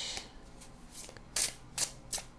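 Hands shuffling a Golden Thread Tarot deck overhand: cards rubbing and slipping against each other, with a couple of sharper card snaps just past halfway.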